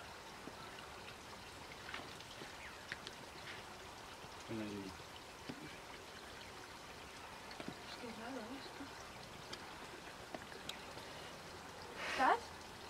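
A small stream running steadily and faintly. A short voice sound breaks in about four and a half seconds in, and a wavering pitched sound comes a few seconds later.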